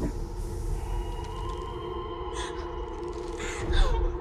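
Sci-fi horror trailer sound design: a low, steady droning rumble with a few held tones underneath. Short harsh noises flare up about halfway and again near the end, the last one the loudest.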